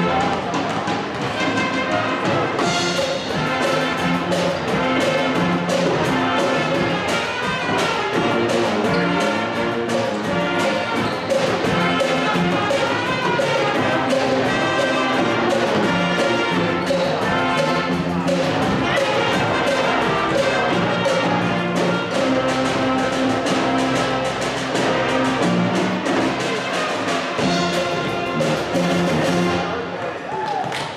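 School pep band playing a tune: trumpets, saxophones and low brass over a drum kit keeping a steady beat, ending right at the close.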